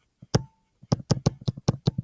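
A stylus tapping and knocking on a touchscreen as a word is handwritten: a single sharp tap, a short pause, then a quick, irregular run of taps.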